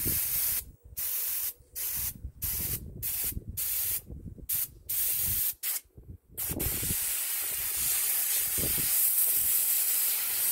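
Iwata airbrush spraying paint onto a shirt: a run of short hissing bursts as the trigger is pressed and released, then a steady spray from about six and a half seconds in.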